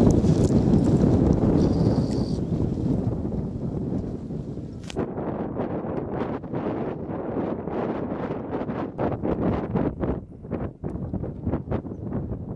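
Wind rumbling on the microphone at first, then irregular crinkling rustles of nylon tent fabric being handled.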